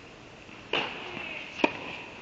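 Tennis ball struck by a racket: one sharp pop about one and a half seconds in, echoing in an indoor tennis hall. Under a second in, a rougher scraping noise starts and runs up to the hit.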